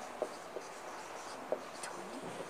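Marker pen writing on a whiteboard: faint strokes with a handful of short, sharp ticks and squeaks as the tip touches down and lifts.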